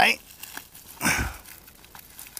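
Dry, brittle mushroom and twigs crackling and crinkling as a hand grasps and breaks the fungus off a tree trunk, with one louder rustle about a second in.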